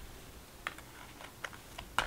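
A few soft, scattered clicks and taps of tarot cards being handled as the deck is picked up from the table.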